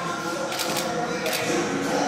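A small handheld compact camera's shutter clicking a few times as photos are taken.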